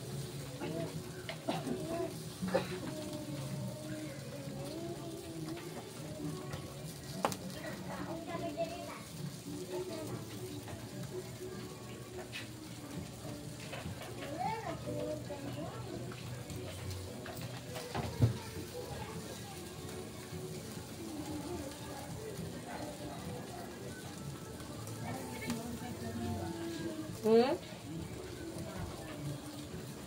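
Faint background chatter of voices and children at play, with music in the distance, over a low sizzle of meat skewers on a charcoal grill. A single sharp knock about 18 seconds in.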